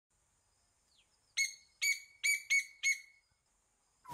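Five short bird-like chirps in quick succession, each dropping sharply at the start and then holding a high note. They begin about a second and a half in and end around three seconds.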